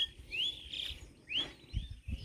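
Bird calling: two short upward-sweeping chirps about a second apart with a brief buzzy note between them, and a low rumble near the end.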